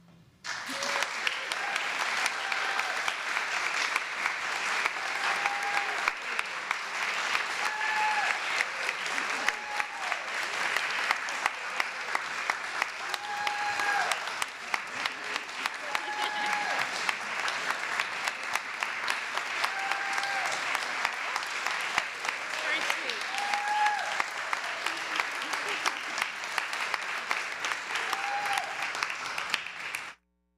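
Congregation applauding steadily after a handbell piece, the clapping starting sharply about half a second in, with voices calling out here and there over it.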